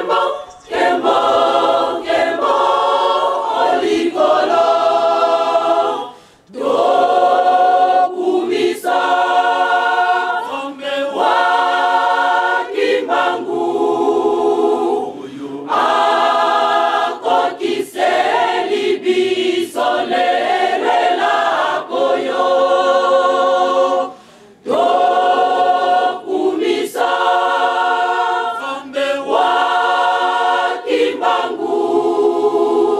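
A group of voices singing a religious song unaccompanied, in long phrases with brief breaks about six seconds in and again about twenty-four seconds in.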